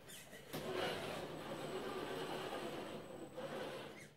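HB Toys Wilderness Beluga 1/10 RC rock crawler driving slowly: the faint, steady whir of its electric motor and drivetrain gears. It picks up about half a second in.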